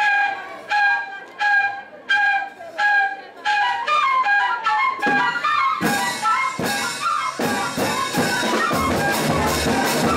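A group of pífanos (Brazilian cane fifes) playing in unison: a short note repeated about twice a second, then a quicker running melody. Drums come in with sharp strokes about six seconds in, joined by a low bass drum near the end.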